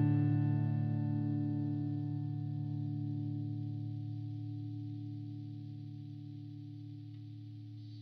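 Electric guitar chord on a Stratocaster's neck single-coil pickup, ringing out through a Line 6 Pod HD 500's Boost Comp compressor model into the PhD Motorway amp model at crunch gain. The chord sustains and fades steadily.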